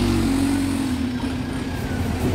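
Alexander Dennis Enviro200 single-deck diesel bus driving past and pulling away. Its engine gives a steady hum that drops slightly in pitch in the first second and fades a little as the bus moves off.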